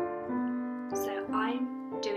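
A children's song begins on a keyboard, playing held notes that change every half second or so. A voice sings a short phrase about a second in.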